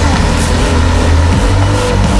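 A Porsche Cayenne SUV's engine running as it drives, a steady low rumble, with music carrying sustained notes underneath.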